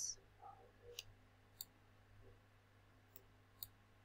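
Four faint, sharp computer-mouse clicks, in two pairs, over near-silent room tone with a low steady hum.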